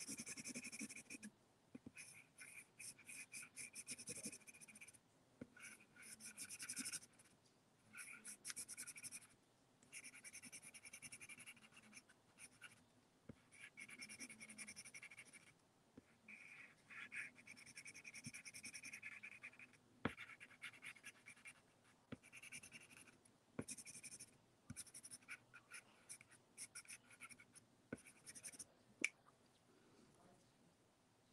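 A pencil scratching across paper laid on an inked acrylic plate, drawing a trace monoprint. It comes in strokes of a second or two with short pauses, plus a few sharp ticks.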